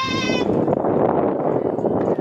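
A girl's high, drawn-out yell, then many voices shouting at once: softball players cheering and calling out to their teammates.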